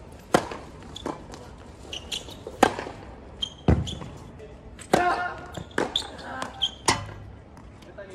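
Tennis ball being struck and bouncing on a court: about nine sharp, irregularly spaced knocks, with brief voices between them.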